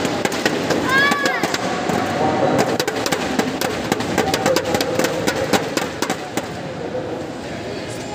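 Scattered hand clapping from a small crowd over mixed voices, thinning out near the end, with a brief squeak about a second in.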